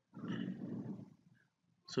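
A man's low, drawn-out wordless vocal sound, like a hesitant "uhh" or hum, lasting about a second.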